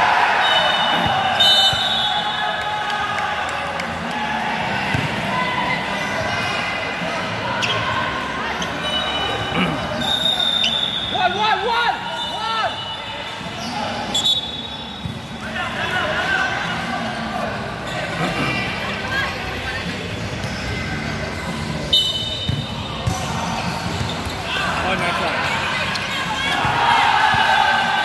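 Futsal being played in a large indoor hall: the ball is kicked and thuds off the court several times amid continual shouting from players and onlookers, all echoing in the hall.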